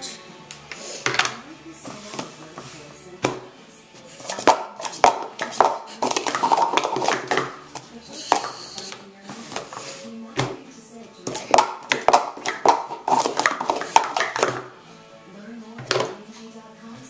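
Plastic sport-stacking cups (Speed Stacks) being stacked up and down in quick runs on three stacks of three, in bursts of rapid clattering clicks and knocks with short pauses between.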